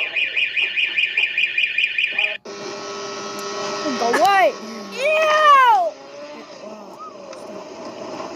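A school fire alarm sounding in rapid, even pulses, cut off abruptly about two and a half seconds in. It gives way to a motorboat's outboard motor running with a steady hum, with women's voices calling out loudly over it.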